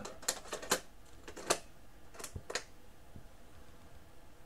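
Sharp plastic clicks and clacks of a cassette tape being handled and loaded into a Crosley CT200 cassette player's deck: about six clicks in the first two and a half seconds, then quiet handling.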